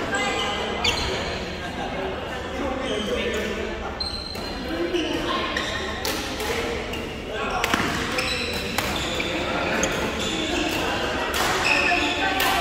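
Badminton hall din: chatter from players and onlookers, with scattered sharp hits of rackets on shuttlecocks from the courts, echoing in the large hall.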